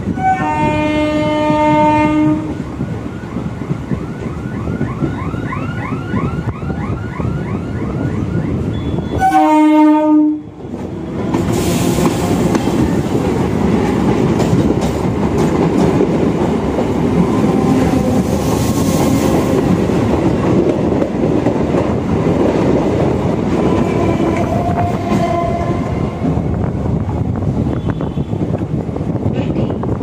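Indian suburban electric (EMU) local train running at speed, heard from its open doorway: an electric train horn sounds a two-second blast near the start and a shorter blast about nine seconds in, with a quick run of short high squeals between them. After that comes the steady rumble and clatter of the train, with rushes of noise as another local train passes alongside.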